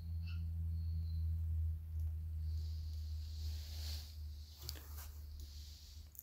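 Low steady hum, with a faint soft rustle about three and a half to four and a half seconds in.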